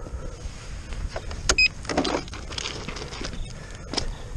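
Boots crunching over loose river gravel and dry grass, with clothing rustle, in uneven steps. A sharp click about one and a half seconds in carries a brief high beep.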